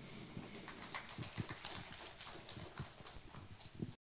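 Faint, scattered applause from a small audience: irregular separate claps, several a second.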